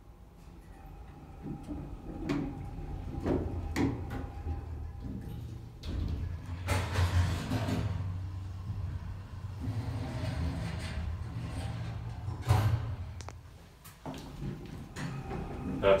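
1977 Otis hydraulic elevator in use: the doors slide shut with a few knocks, the car runs with a steady low hum, stops with a thump, and the doors slide open again near the end.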